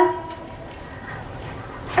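A pause in a woman's amplified speech. Her last word rings out and fades over the first half-second, then a steady background noise of the busy railway-station surroundings fills the gap until she speaks again right at the end.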